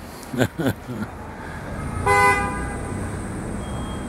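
A car horn gives one short toot about two seconds in, over the low rumble of street traffic.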